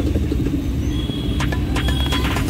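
Low, steady rumble of a car moving slowly through traffic, heard from inside the cabin, with a few sharp clicks near the end.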